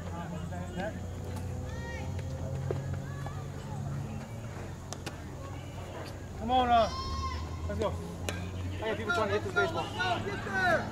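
Distant, unclear voices of players and coaches calling out on a ball field, with one loud drawn-out shout about six and a half seconds in and more calls near the end, over a steady low hum.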